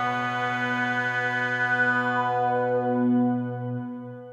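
Behringer DeepMind 6 analogue polyphonic synthesizer holding a sustained chord on an ambient pad patch, its upper tones slowly dimming. The chord fades away near the end.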